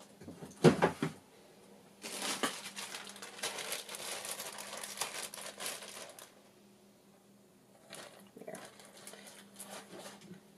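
Hands rummaging through craft supplies for ribbon: a couple of knocks about a second in, then about four seconds of crinkling and rustling, and fainter rustling again near the end.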